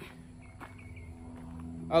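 Dodge Ram's Hemi V8 idling steadily with a low, even hum, running quietly through its replacement muffler.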